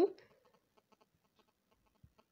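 A woman's voice trailing off at the very start, then near silence with a few faint scattered ticks.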